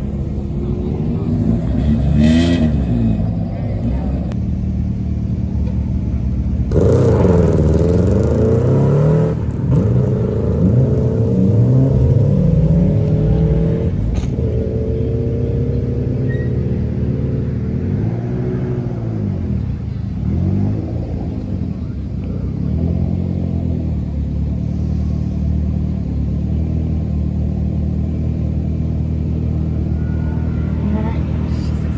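Rally car engines running steadily, with cars revving and pulling away hard several times; the loudest run-off, with gravel noise, comes about seven seconds in, and there are more rising-and-falling revs a little past the middle.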